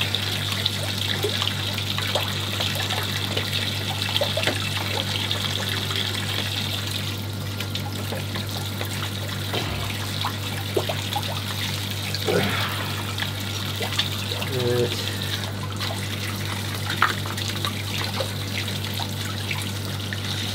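Water trickling and hissing from a leaking PVC ball valve fitted on a pressurised pond bottom-drain purge pipe; the leak is a sign of a badly seated O-ring. The hiss eases after about seven seconds. A steady low hum runs under it, and a few light knocks come from handling the fitting.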